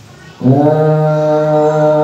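A man's voice holding one drawn-out syllable at a steady pitch, starting about half a second in. It is the chanted, sung way a teacher draws out a word when reading an Arabic kitab aloud.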